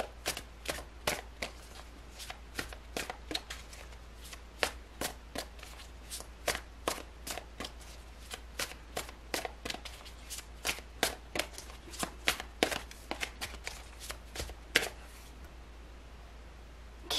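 A deck of tarot cards being shuffled by hand: an irregular run of short card slaps, a few a second, that stops near the end.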